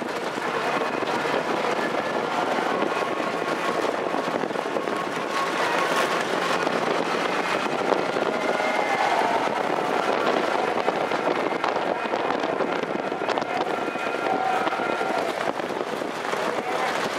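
Trotting horses and sulkies racing past on a dirt track, heard as a steady crackling rush with faint shouting voices over it.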